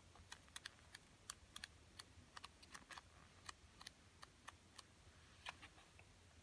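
Faint, quick ticks of a digest magazine's pages being thumbed through, each page flicking off the thumb. They come thick and fast for about three seconds, then thin out to a few scattered ticks.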